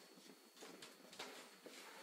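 Near silence: faint room tone with a few soft clicks and rustles.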